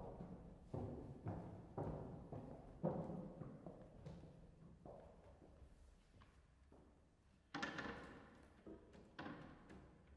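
Footsteps on a wooden stage floor, about two a second for the first few seconds, each thud ringing on in a reverberant hall, followed by two louder knocks later on as the players settle at their pianos.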